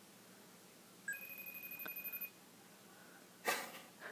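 FaceTime call ringing out on an iMac: a short beep, then a faint, fluttering high ring tone lasting about a second, while the call waits to be answered. A brief hiss of noise comes near the end.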